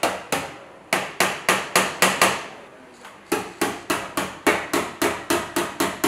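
Hammer tapping rapidly on a car's sheet-metal body panel, about four strikes a second, each with a short ringing tail. The tapping stops for about a second midway through, then starts again at the same pace.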